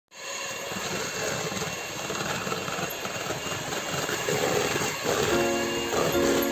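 Electric hand mixer running steadily, its twin beaters whisking a frothy egg mixture in a plastic bowl. Background music comes in near the end.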